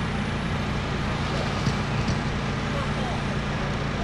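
Steady outdoor background noise with a constant low hum. Faint voices and a few faint, brief rising-and-falling whines are mixed in, typical of small electric RC cars running on a race track.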